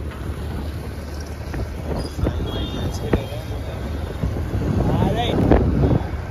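Heavy rain with wind buffeting the microphone over a low, steady rumble, and many scattered sharp taps.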